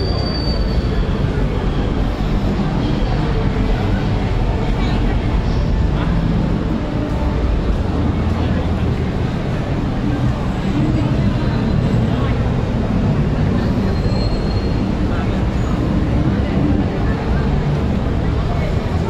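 Steady low rumble of an elevated metro train, a BTS Skytrain, running through the station, with a crowd's voices around it.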